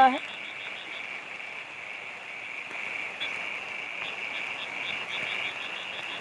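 A steady chorus of frogs calling in short repeated pulses, over an even hiss of flowing floodwater.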